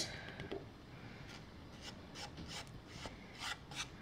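Faint, irregular taps and rustles of a sheet of cardstock being tapped and shaken over a plastic tray to knock off excess embossing powder.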